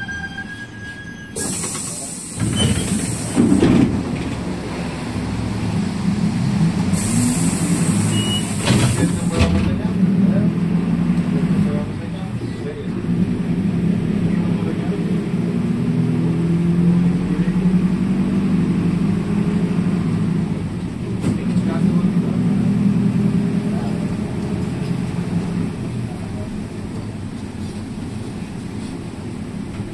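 Ride inside a moving bus: the engine drones steadily, its pitch shifting as the bus changes speed. Loud hissing starts and stops sharply twice, about a second in and again around seven seconds.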